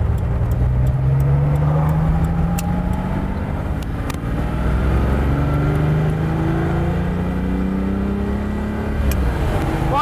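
1967 Lamborghini 400 GT 2+2's V12 pulling under acceleration. Its pitch rises, drops back at a gear change about three to four seconds in, and rises again before falling off near the end.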